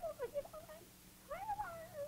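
A high, wordless puppet voice making short squeaky cries that glide up and down, then a longer one about a second and a half in that rises and wavers down.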